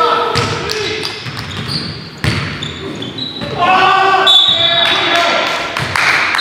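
Basketball bouncing on a hardwood gym court, with sharp thuds ringing in a large hall, mixed with players' voices calling out across the court.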